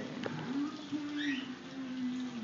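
A short rising bird chirp about a second in, over a faint low drawn-out wavering sound.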